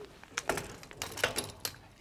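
A handful of light clicks and rattles as a speargun is lifted off a metal wall-rack hook.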